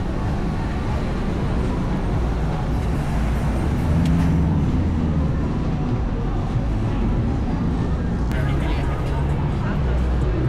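Busy downtown street ambience: car and motorbike traffic running steadily, mixed with the indistinct chatter of passers-by.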